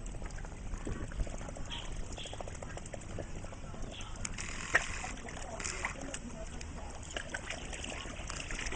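Pond water splashing and sloshing as koi crowd and gulp at the surface around a black swan dipping its bill in, with many small splashy clicks and one sharper splash about halfway through.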